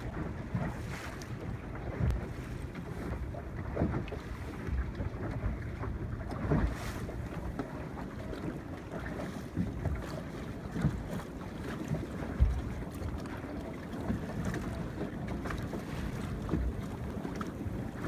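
Wind buffeting the microphone over water lapping against a small boat's hull on open sea, a steady low rush with a few brief louder bumps, the loudest about twelve seconds in.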